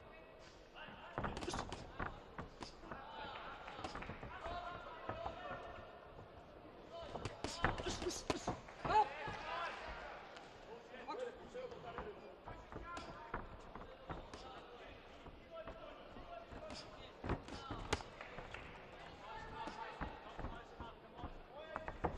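Amateur boxing bout: irregular sharp thuds and slaps of gloved punches and boxers' feet on the ring canvas, with voices shouting from ringside.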